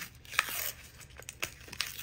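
A sheet of paper rustling and crinkling under the hands, with a few short sharp crackles.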